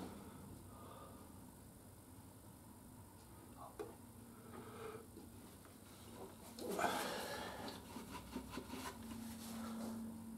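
Faint sound of engine oil being poured from a plastic jug into a motorcycle's oil filler, with a brief louder scraping rustle about seven seconds in and a low steady hum near the end.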